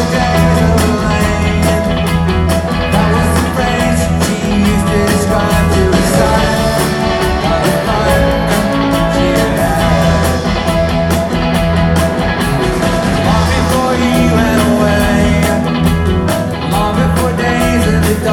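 A rock band playing live and loud: electric guitars, bass guitar, drum kit and keyboard together at a steady tempo.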